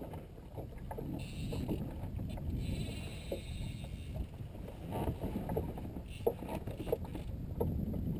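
Small waves lapping and slapping against the hull of a small fishing boat, with a couple of sharper knocks in the second half.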